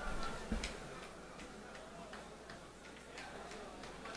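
Irregular light clicks and taps scattered through a quiet room, with a low thump about half a second in.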